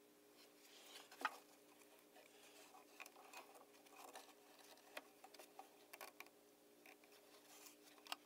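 Near silence with faint scattered clicks and rustles of small parts being handled, one slightly louder click about a second in, over a faint steady hum.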